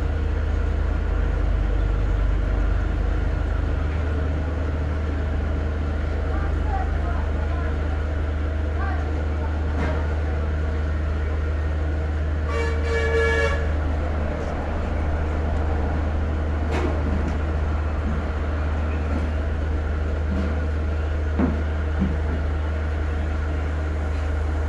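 A steady low hum throughout, with a horn-like tone sounding once for about a second near the middle.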